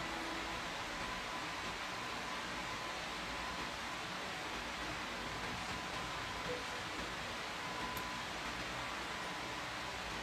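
Steady, even hiss of room tone, with the last note of the organ music dying away at the very start.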